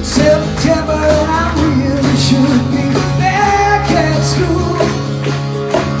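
Live acoustic band playing: strummed acoustic guitars over a steady bass line, with a melody line weaving above.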